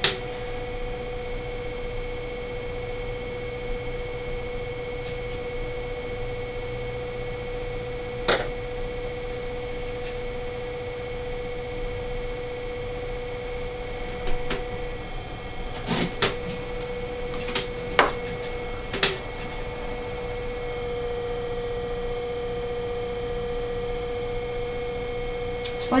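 Electric potter's wheel motor humming steadily while the wheel spins. A handful of short, light clicks come partway through.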